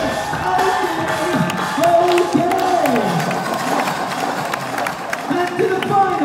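Breaking-battle crowd cheering and clapping after the DJ's beat cuts out, with a voice over the PA letting out several long calls that rise and then fall away in pitch.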